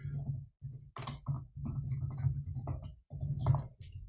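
Computer keyboard typing: irregular runs of keystrokes with short pauses between them, over a steady low hum.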